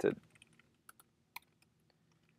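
A handful of sparse keystrokes on a computer keyboard, single taps spread out rather than a fast run, with the end of a spoken word at the very start.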